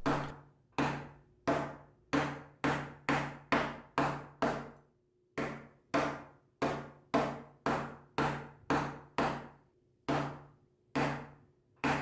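A hardness-7 tester pick struck again and again onto a Corning tempered-glass screen protector fitted on a phone: sharp glassy taps about two a second, with two short pauses. The glass takes the blows without cracking.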